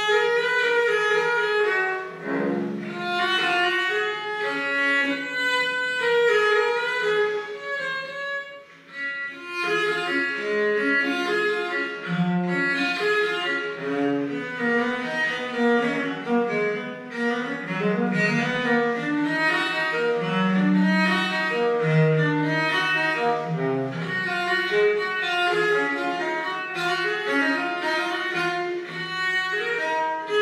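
Viola da gamba played with the bow, a flowing line of quick notes, with a brief lull between phrases about eight seconds in.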